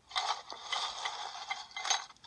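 Lumps of charcoal tumbling and clattering as they are poured out onto a heap, with a sharper click near the end.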